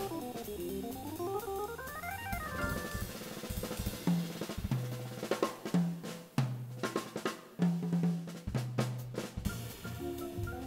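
Live jazz organ trio: a fast run of notes climbs and comes back down over the first few seconds, then the drum kit takes over with snare, bass drum and cymbal hits, punctuated by short, low held bass notes.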